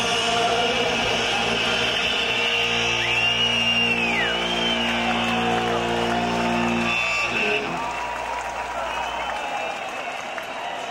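Punk rock band ending a song live: the electric guitars and bass hold a final chord for a few seconds, then it cuts off about seven and a half seconds in. A big outdoor crowd cheers over and after the chord, with high whistle-like glides near the start.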